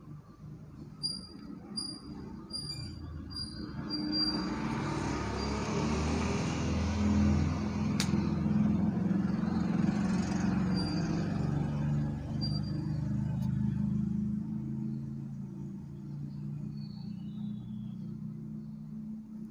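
A passing road vehicle: a low rumble with a broad hiss that swells about four seconds in and slowly fades away over the next ten seconds. Just before it, a quick series of five short high chirps.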